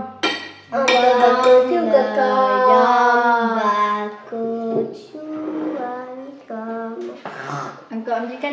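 Sing-song chanting, held on long notes, loudest in the first half and then broken into shorter phrases.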